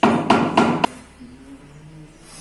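Hammer tapping a marble floor slab bedded on sand, four quick sharp knocks with a short ring in the first second, then stopping suddenly.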